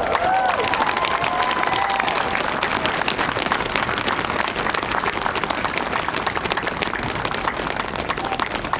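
An audience applauding, many hands clapping steadily, with a few voices calling out in the first couple of seconds.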